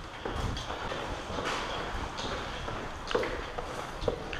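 Footsteps on a concrete floor and rustling tactical gear, with a few sharp knocks.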